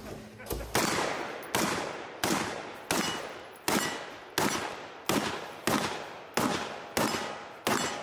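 AR-15 rifle firing a steady string of about a dozen single shots, roughly one every 0.7 seconds, each shot trailing off in a long echo.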